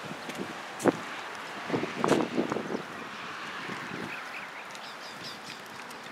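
Outdoor background noise with a sharp click about a second in, a cluster of short sounds around two seconds, and faint high chirps near the end.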